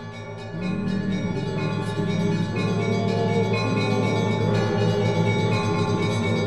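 Church bells ringing, several bells sounding together and overlapping, growing louder about a second in and then ringing on steadily.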